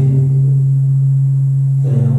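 Loud, steady low electrical hum, as from a microphone and loudspeaker system, holding one flat pitch throughout; voices come back in over it near the end.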